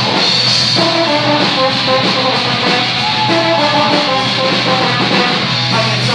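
Live rock band playing loudly: amplified electric guitar carrying a melodic line of held notes over a drum kit.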